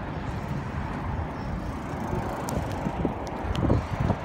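Outdoor street noise with a steady low rumble of wind and traffic on a phone microphone, with a few short clicks and bumps from handling in the second half.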